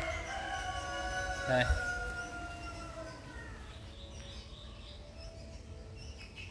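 A bird calling in the background: one long call that falls slightly in pitch and fades out about three seconds in.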